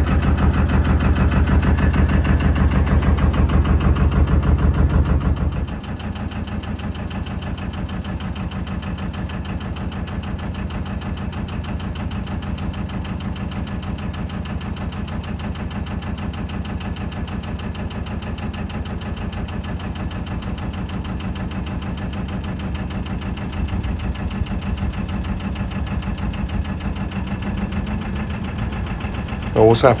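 A narrowboat's inboard engine is running steadily with an even, regular beat while under way. It is louder at first, then drops to a quieter steady run about six seconds in.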